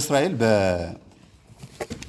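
A man's lecturing voice drawing out a low, falling syllable, then a pause with a few faint mouth clicks.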